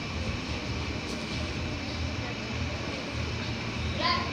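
Indistinct murmur of voices over a steady low rumble, with no clear words.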